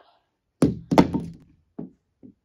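Two dull thunks on a ping-pong table, about half a second apart, each with a short ringing tail.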